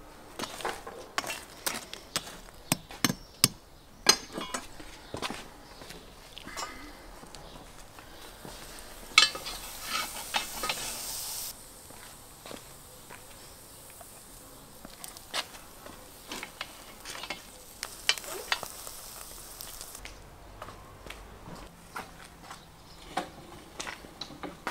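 Sharp clicks and scrapes of a metal poker working the charcoal in a brick grill. After that comes a steady high sizzling hiss from skewered ram's testicles wrapped in caul fat cooking over the hot coals, with a few scattered clicks.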